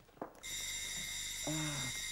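An electric doorbell ringing once, a steady high ring lasting about a second and a half.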